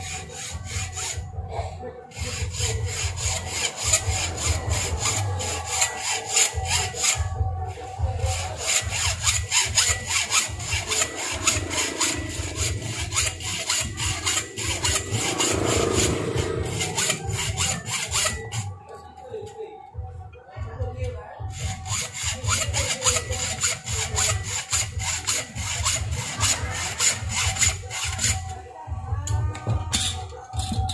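Hacksaw sawing back and forth on the finned metal housing of a small electric water-pump motor, with a few brief pauses and a longer break about two-thirds of the way through.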